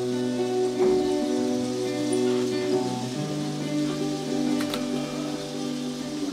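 Live band music on stage: violin and guitars play an instrumental passage over long held notes and a sustained bass note that moves up about halfway through.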